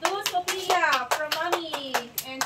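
Hands clapping in a quick, even rhythm, about four claps a second, while children's high voices call out over them.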